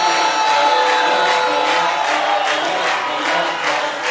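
Worship song medley played with instruments and a steady beat, with voices singing.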